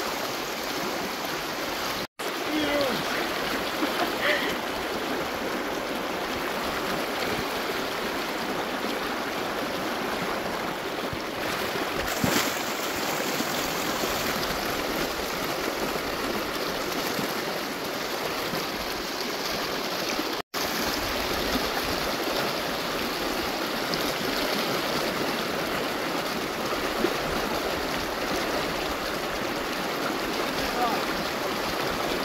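Shallow rocky river rushing through a riffle, a steady wash of water noise. It drops out for an instant twice.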